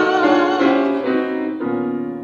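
Grand piano playing a song accompaniment in a stepping line of notes, with a male singer's voice trailing off near the start. The piano then carries on alone, growing quieter near the end.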